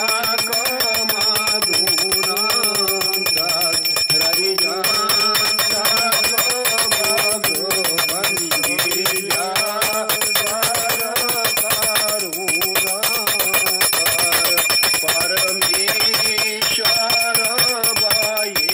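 Small brass puja hand bell (ghanti) rung rapidly and continuously, each clang blending into a steady ringing tone. A voice chants beneath the bell.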